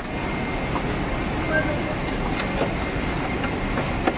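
Steady rushing cabin noise inside a Boeing 777-300ER airliner, with a few faint ticks.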